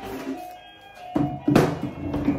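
A pump spray bottle of heat protectant spritzing onto hair in short hisses, the loudest about a second and a half in, over background music.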